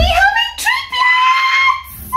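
Woman shrieking with excitement: high-pitched squeals that rise and then settle into one long held note, stopping near the end. A low thump at the very start.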